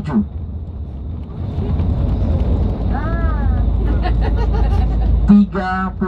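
Low, steady engine and road rumble inside a moving bus on a highway, growing louder for a few seconds in the middle, with faint passenger voices in the background. A man's voice starts again near the end.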